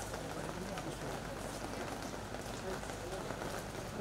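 Faint murmur of people talking over a steady background hiss, with no single sound standing out.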